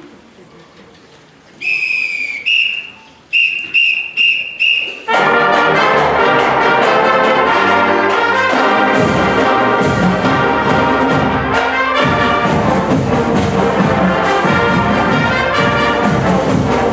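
A whistle count-off, one long blast, a short one, then four quick blasts, and about five seconds in a large high school pep band of trumpets, trombones, saxophones and horns comes in loud all together and keeps playing.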